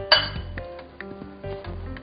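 A few clinks of a potato masher against a glass bowl as it mashes boiled potatoes, over steady background music.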